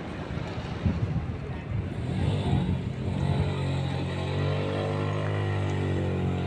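A motor running at a steady pitch. Its hum settles in about two seconds in, over outdoor rumble and wind noise.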